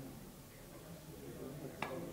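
Billiard cue tip striking a ball: one sharp click near the end, after a stretch of quiet hall tone.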